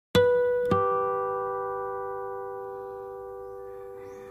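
Two-note electronic intro chime: a higher note, then a lower one about half a second later, both ringing on and slowly fading away.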